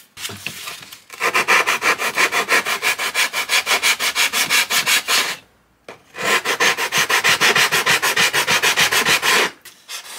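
Rapid back-and-forth rubbing strokes of a hand shaping tool on a balsa wood fuselage, in two runs with a short pause of about a second in the middle.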